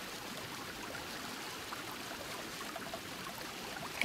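Jacuzzi jets churning and bubbling the water, a steady rushing hiss.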